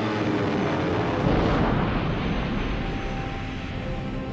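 A roar of wartime battle noise, aircraft engine and explosion rumble, swelling to its loudest about a second and a half in and then easing, with orchestral credits music thinning under it and coming back near the end.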